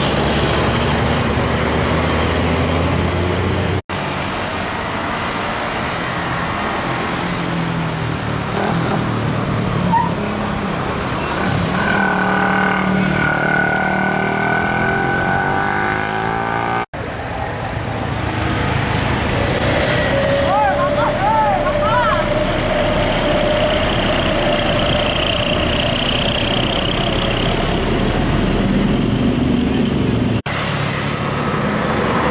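Large diesel intercity buses running past on a hill road, with motorcycle and car traffic, at a steady loudness interrupted by two brief drops.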